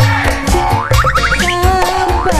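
Live band music with a steady low drum beat, and a quick rising run of notes about a second in.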